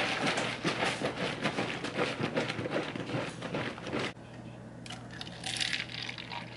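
Dense crackling and clicking of thin plastic being handled, a red plastic party cup and a plastic milk jug, for about four seconds. Near the end, milk starts pouring from the jug into the cup.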